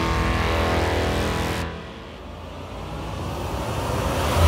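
A car engine note held steady over intro music, fading out about a second and a half in and building again near the end.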